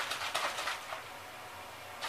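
A plastic spray bottle of oil, aloe vera juice and water being shaken: about four short bursts of liquid sloshing in the first second, then it goes quieter.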